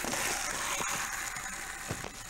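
Skateboard wheels rolling on concrete, a steady gritty noise that slowly fades as the loose board rolls away. There is a faint knock about halfway through and another near the end.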